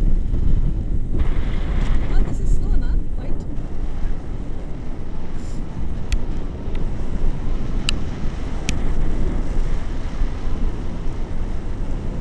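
Wind rushing over the camera microphone in paragliding flight, a loud, steady low rumble, with a few sharp clicks in the second half.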